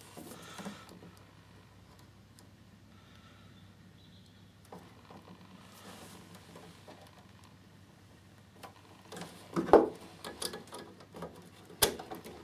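Faint handling sounds of a crimped spade connector being squeezed with pliers and wiped with a cloth: small scrapes and clicks. Near the end comes a sharp click as the connector is pushed back onto its tab on the circuit board.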